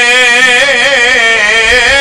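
A man singing an Islamic nasheed solo, holding long notes with a wavering pitch.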